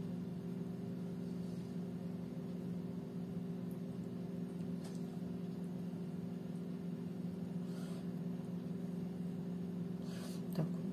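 A steady low hum made of several fixed tones, with a few faint soft taps.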